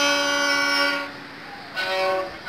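Solo violin played with the bow: one long held note for about a second, a short pause, then the playing picks up again near the end.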